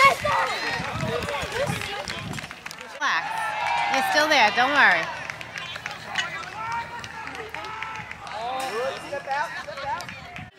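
Several voices shouting and calling out across a ballfield, some of them high-pitched, with no clear words. The calls come loudest just before the start, in the first second and again about three to five seconds in.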